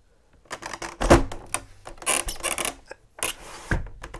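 Wooden lower sash of an Andersen 400 Series double-hung window being pushed back into its vinyl jamb track: a run of clicks, knocks and scraping. The loudest knocks come about a second in and near the end.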